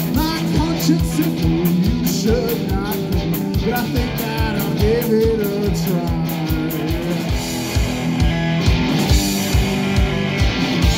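Live rock band of two electric guitars and a drum kit, with no bass, playing a steady, driving beat with bending melody notes over the chords.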